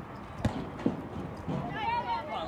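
A soccer ball being struck twice, two sharp thuds about half a second apart, as a player dribbles it upfield. Shouting voices from players and spectators start near the end.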